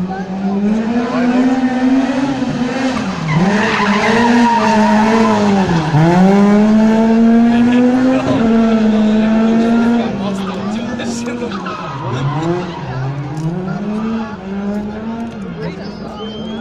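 Rally car engine held at high revs, its pitch climbing and then dropping sharply several times before climbing again. It is loudest in the middle, then falls away.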